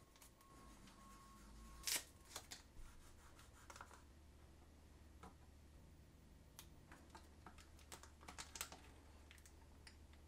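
Near silence broken by faint scattered clicks, crinkles and taps of hands peeling the adhesive backing off small magnets and metal plates and handling them, with one louder click about two seconds in and a cluster of small taps near the end.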